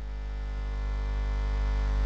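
A steady electrical hum made of many evenly spaced tones, slowly growing louder.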